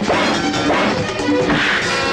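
Dubbed film punch sound effects, sharp whacks landing twice, over fight-scene background music.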